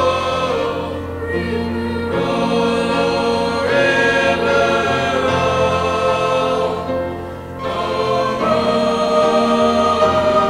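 High school choir singing in held chords, the voices moving together from chord to chord, with a brief softer moment a little past the middle.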